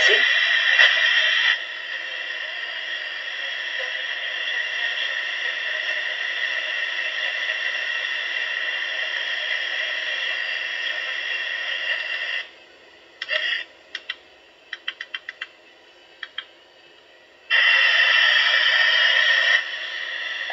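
Steady static hiss of the kind used for EVP recording, loud for the first second and a half and then a little lower. It cuts off about twelve seconds in, leaving a few scattered clicks, including a quick run of about five. The hiss returns loudly for about two seconds near the end.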